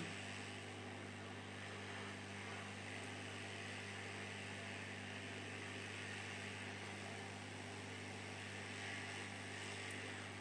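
Hot-air rework station blowing steadily on a phone circuit board to melt the solder holding a shield cage: an even, quiet airflow noise over a low electrical hum.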